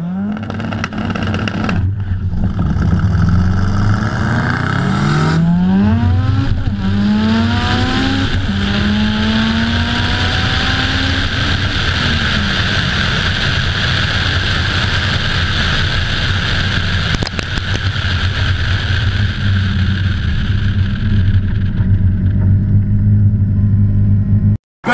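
Car engine accelerating hard up through several gears, its pitch climbing and dropping back at each shift. It then gives way to a steady wind and road roar at high speed on an outside-mounted microphone.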